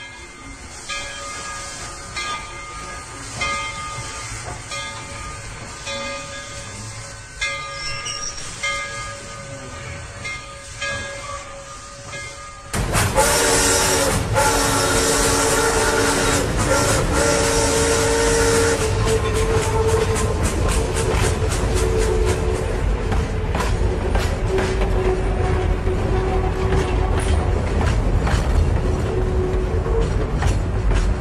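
After a quieter opening of repeated pitched notes, a train whistle sounds suddenly and loudly about thirteen seconds in, held for several seconds. It then fades as the train runs on with rapid rhythmic clicking of wheels over the rail joints.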